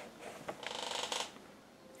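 Faint handling of the cardboard and plastic toy box: a quick rattle of small ticks lasting well under a second, then silence.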